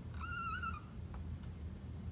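Dry-erase marker squeaking on a whiteboard as a stroke is drawn: one high, slightly wavering squeal lasting about half a second.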